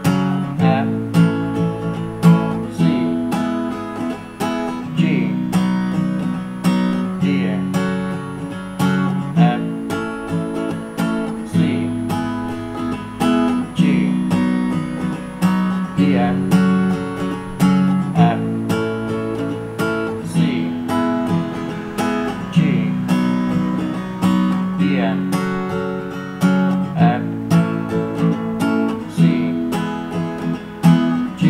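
Capoed acoustic guitar strummed in a steady rhythm through a repeating Dm–F–C–G chord progression, moving to a new chord about every two seconds.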